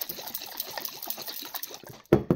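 Water sloshing inside a capped glass jar as it is swirled quickly in circles to spin up a tornado vortex, a rapid continuous churning.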